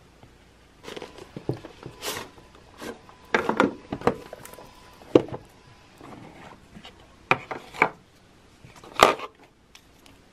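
Hands handling a boxed LAMY Safari fountain pen on a wooden table: an irregular series of taps, clacks and scrapes from the cardboard gift box and the plastic pen. The sharpest clacks come about five seconds in and again near the end.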